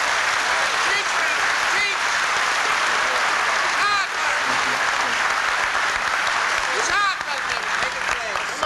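Large hall audience applauding steadily, with a few voices calling out about four and seven seconds in.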